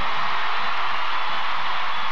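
Arena audience applauding, a steady even clatter of clapping.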